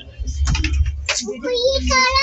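Small clicks of a spoon against a plastic curd cup over a steady low rumble inside a train carriage, with a young child's voice speaking in the second half.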